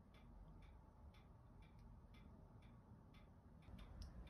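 Near silence: room tone with faint, evenly spaced ticks about twice a second.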